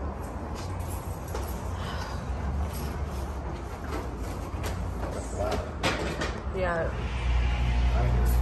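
Hydraulic elevator's pump motor heard from the hallway. Camera handling and footsteps come first, then about seven seconds in a steady low hum with a faint steady tone starts up as the pump begins to run.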